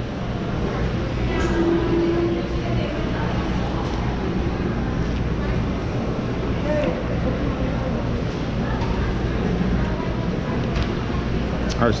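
Steady din of a busy mall food court: a constant low rumble under indistinct background voices.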